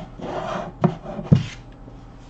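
Plastic masks being handled and set down: a rubbing, scraping noise, then two sharp knocks about half a second apart, the second the loudest, followed by a brief rub.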